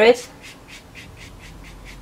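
A sponge-tipped pastel blending tool being rubbed back and forth over sanded Fisher 400 pastel paper: quick, faint, scratchy strokes, about six a second.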